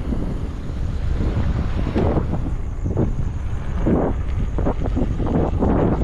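Wind buffeting the microphone over a steady low rumble of tyres on a rough dirt track as an electric scooter is ridden along it, with a few brief jolts from bumps.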